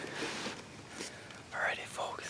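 A man whispering close to the microphone, breathy, with the loudest whispered burst near the end.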